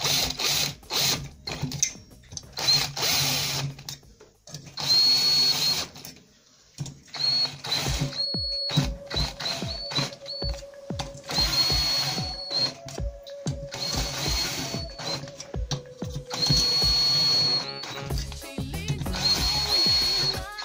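Cordless drill-driver with a socket spinning the nuts on the camshaft bearing housing studs of a VAZ 2108 8-valve cylinder head. It runs in about half a dozen short bursts of a steady high whine, each about a second long, with pauses and clicks as the socket moves from nut to nut.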